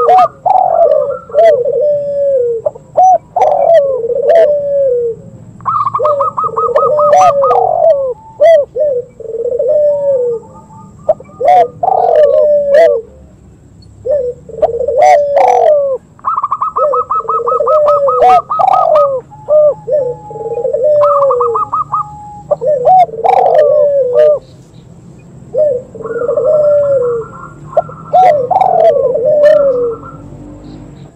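Recorded cooing of three dove species overlapping in repeated phrases: spotted dove, zebra dove and barbary dove. Lower cooing phrases alternate with runs of fast, high, pulsed notes, with a few short sharp clicks between them.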